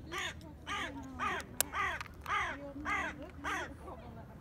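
A crow cawing in a quick, even series of about eight calls, roughly two a second, with one sharp click midway.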